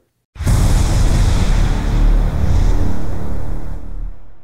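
Outro logo sting: a sudden loud cinematic hit with a deep rumbling low end and a noisy whooshing wash. It holds for about three and a half seconds, then fades out.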